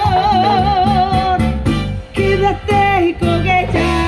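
Live cumbia band playing: a lead singer holds long notes with wide vibrato over bass and guitar, with brief breaks in the line about two and three seconds in.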